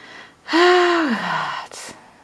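A woman's loud, breathy sigh about half a second in, its pitch sliding down over about a second, followed by a short breath near the end.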